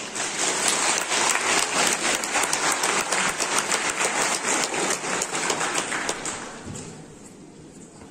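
Audience applauding: dense clapping from a large crowd that fades away about six to seven seconds in.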